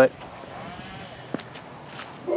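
A quiet lull: faint outdoor background noise with a couple of light clicks near the middle, and no engine running.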